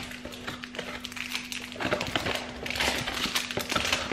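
A cardboard box being opened by hand: the lid and inner packaging rustling and scraping, with small knocks, the rustling heaviest about three seconds in.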